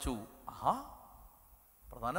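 A man's voice through a microphone: the tail of a word at the start, then one short sigh-like vocal sound with its pitch rising and falling about half a second in.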